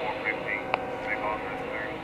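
Railroad radio scanner hissing, with faint fragments of a radio voice and a single click about three-quarters of a second in.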